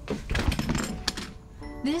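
A dull thump amid rustling about half a second in, then soft sustained music notes come in near the end.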